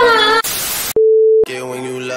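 A voice trailing off, then half a second of hiss and a single steady, pure beep about half a second long, after which music starts: a static-and-beep transition between clips.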